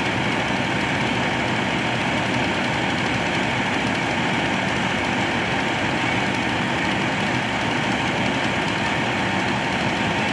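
Fire apparatus engine running steadily at the scene, an even drone that holds the same level throughout.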